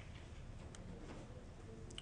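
Quiet room tone with two faint, short clicks, about a second in and just before the end, from a computer mouse.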